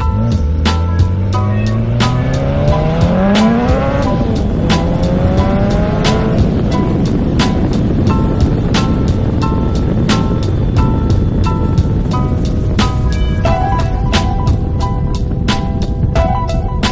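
Car engine accelerating hard, its pitch rising over the first four seconds, dropping at a gear change and rising again for another two seconds before fading. Music with a steady beat plays throughout.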